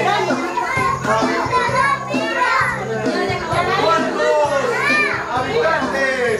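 Many children's voices at once, chattering and calling out together, over music with a steady bass line.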